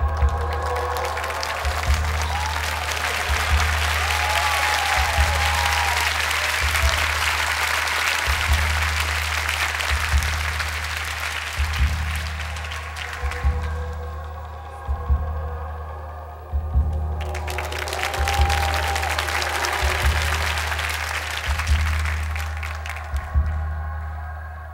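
Audience applauding in two spells, the first dying away about 13 seconds in and the second rising about 17 seconds in, over background music with a deep, slow bass beat about every 1.7 seconds.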